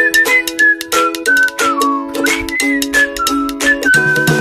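Background music: a whistled melody over plucked-string chords and a steady beat of light percussion.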